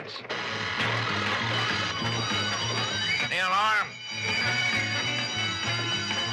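Alarm bell ringing steadily after being deliberately tripped, over a pulsing cartoon music score, with a short vocal cry about three and a half seconds in.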